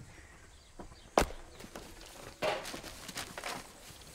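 Footsteps and rustling in dry leaf litter, with one sharp crack about a second in.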